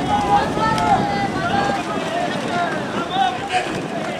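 Several voices shouting and calling over one another, too mixed to make out words, with wind noise on the microphone.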